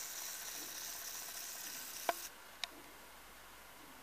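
Quiet room tone inside a small church, a steady hiss that drops a little past two seconds in, with a few faint isolated clicks: one at the start, one about two seconds in and one just after.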